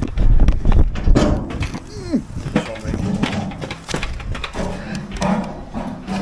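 Handling noise from a camera being picked up and set down on a mortar spot board: loud bumps and rubbing in the first second or so, then lighter knocks and scrapes, with snatches of voice.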